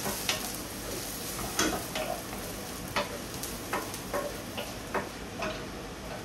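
Chicken rice frying and sizzling in a frying pan, with about nine sharp metal knocks spread irregularly through it as the rice is stirred with a spoon and the pan is tossed.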